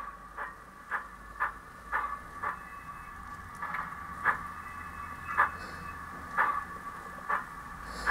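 Sound-decoder steam chuffs from a model GWR 0-6-0 tank locomotive's small onboard speaker as it runs at a low speed step, about two chuffs a second at first, then further apart, over a steady faint whine.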